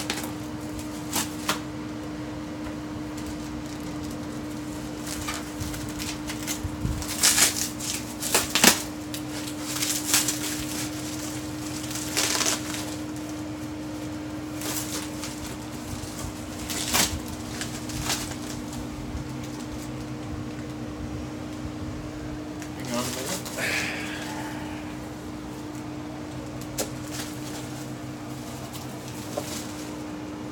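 Foam and plastic packaging wrap rustling and crinkling in irregular bursts as a heavy rosin press is pulled out of it and handled, over a steady low hum.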